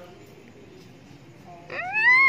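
A single high-pitched animal call near the end, rising in pitch and then dropping sharply.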